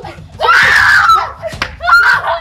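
A woman screaming during a scuffle: one long, high scream starting about half a second in, falling off slightly at its end, then a second short cry near the end.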